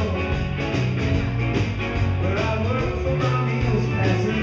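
Rock band playing live: two electric guitars over bass and drums, with a man singing lead.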